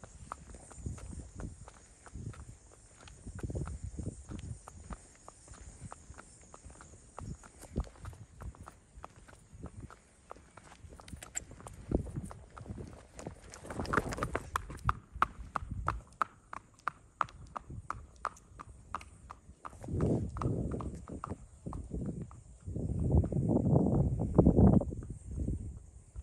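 A horse's hooves clip-clopping on an asphalt road at a walk, in an irregular run of sharp clops. Near the end come a few louder noisy bursts.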